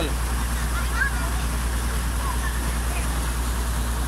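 Excavator's diesel engine running steadily at idle with a constant low hum, over muddy water rushing down a freshly dug drainage channel.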